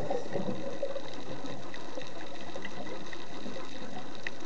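Steady underwater hiss with scattered faint clicks and crackles, picked up by a camera in an underwater housing during a scuba dive.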